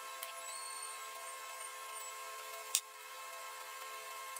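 Quiet, steady background hum made up of several faint fixed tones, with one short light click about three-quarters of the way through.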